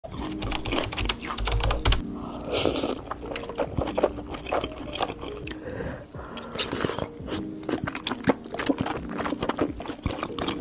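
Close-miked mukbang eating sounds: chewing spicy noodles and then a spoonful of stew, full of quick wet clicks and smacks, with two short hissing slurps.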